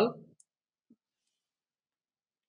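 The last syllable of a man's speech, then near silence broken by a couple of faint clicks.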